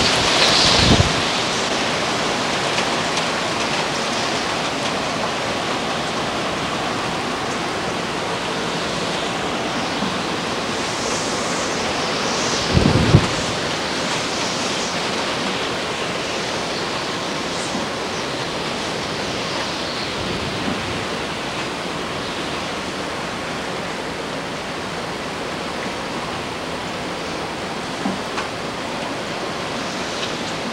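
Hurricane-force wind rushing steadily, with two low thumps of gusts buffeting the microphone, about a second in and again about 13 seconds in.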